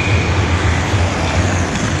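Steady rumbling noise of an indoor ice hockey game in play, with a thin high squeal held for about a second and a half near the start.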